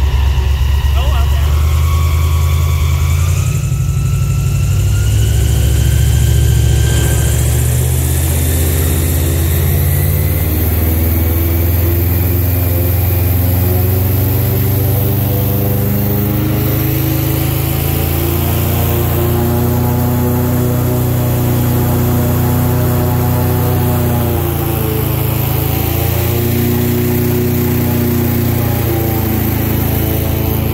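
Airboat engine and propeller running loud and steady while under way. A whine rises in pitch over the first several seconds, and the engine's pitch shifts a little later on.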